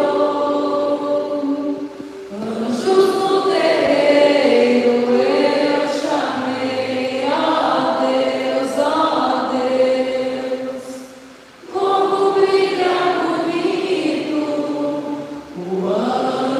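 Umbanda ponto cantado sung by voices together, led by two women, in long held chant-like phrases with short breaths between them about two seconds in and again past the middle.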